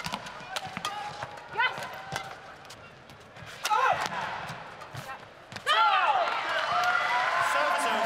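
Badminton rally: rackets striking the shuttlecock in quick sharp clicks, with shoes squeaking on the court. A little over halfway through the rally ends and the crowd cheers loudly as the home pair wins the point.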